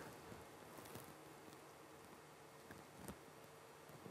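Near silence: hall room tone with a faint steady hum and a couple of faint clicks.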